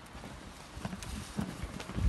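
A few light, scattered clicks and knocks over quiet outdoor background rumble.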